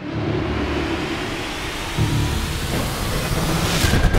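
Trailer sound-design transition: a loud rushing swell of noise over a deep rumble, with a faint tone rising through it, ending in a quick cluster of sharp hits.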